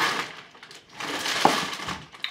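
Packaging rustling and crinkling inside a cardboard box as an item is handled and lifted out: a short burst, a brief lull, then a longer spell with a sharp click about a second and a half in.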